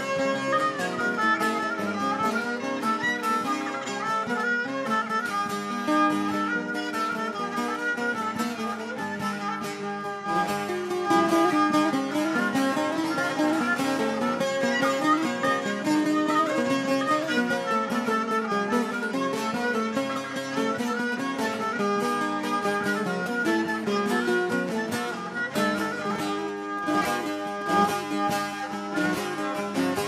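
Bağlama (Turkish long-necked saz) playing an instrumental Turkish folk tune: a steady run of quick plucked notes.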